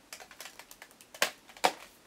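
Light tapping clicks, as of fingers on a device, in an irregular run; two louder taps come a little after the middle.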